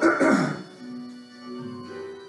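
A woman clears her throat once, loud and short, right at the start. It sits over a hymn's instrumental introduction, which carries on with held notes.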